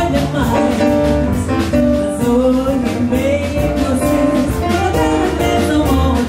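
A woman singing with a live jazz band of keyboard, drum kit and plucked guitar, the Brazilian tune set to a Goan mando rhythm in six-eight time.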